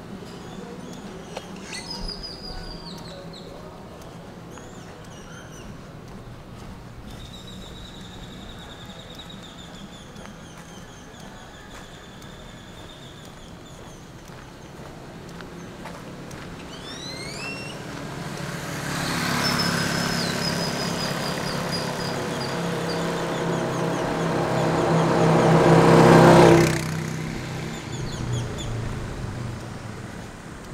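Street ambience with birds chirping and whistling. Then a motor vehicle approaches and passes close, its engine growing steadily louder for several seconds before dropping away abruptly near the end.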